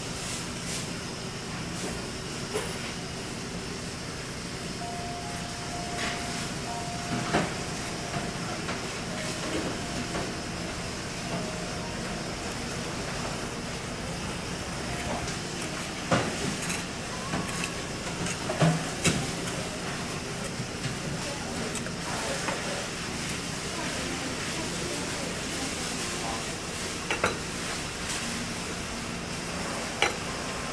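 Knife filleting a mahi mahi on a wooden cutting board: a few short sharp knocks and scrapes of the blade against the board, over a steady background hum.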